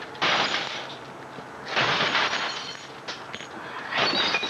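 A sledgehammer smashing the glass screen of an old tube television: two heavy blows about a second and a half apart, each followed by a spray of shattering glass, then a lighter knock near the end.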